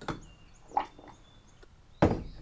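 A few light knocks as a hand plastisol injector and an aluminium soft-bait mold are handled, with faint bird chirps.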